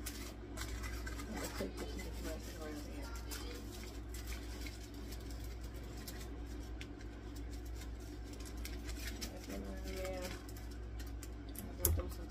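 Aluminum foil crinkling in the hands as it is wrapped and pressed around a form: a steady run of small, irregular crackles.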